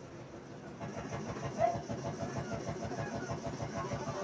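A motor vehicle's engine running with an even low throb, getting louder about a second in, with one short high-pitched sound partway through.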